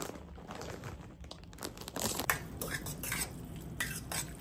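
A fork clinking and scraping against a stainless steel pan as noodles are stirred, the clinks coming thicker and louder from about two seconds in.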